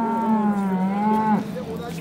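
Cow mooing: one long drawn-out call that breaks off about a second and a half in.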